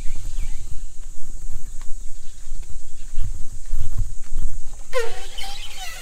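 Uneven low rumble of wind and handling on a camera microphone while walking, with a few faint footstep ticks. About five seconds in, a short cough.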